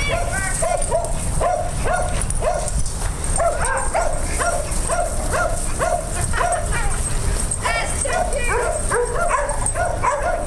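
A dog barking repeatedly in short, high yips, about two a second, with some higher whining calls mixed in, during rough play among several dogs. A steady low rumble runs underneath.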